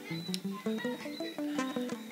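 Acoustic guitar playing a quick run of single picked notes that step up and down in pitch, quieter than the strummed chords around it.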